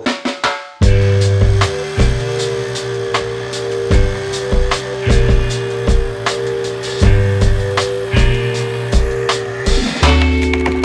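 Background music with a drum-kit beat, a deep bass line and a held chord, starting about a second in after the speech ends.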